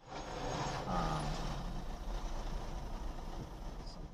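A car driving at night: a steady low rumble of engine and road noise as heard inside the car, with a brief fainter pitched sound about a second in.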